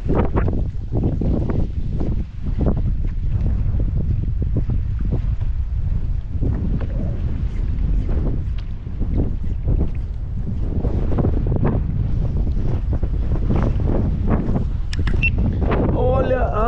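Strong gusting wind buffeting the microphone on open water: a loud, constant low rumble with frequent short slaps over it.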